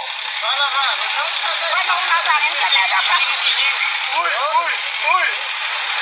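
Several high-pitched voices talking and calling out, overlapping and unclear, over a steady hiss.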